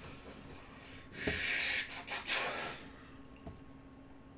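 A man breathing out heavily twice: a loud sigh about a second in, then a second, shorter breath out, followed by a faint click near the end.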